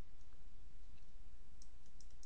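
Faint clicking of a computer mouse's scroll wheel, a quick run of clicks starting near the end, over a steady low electrical hum.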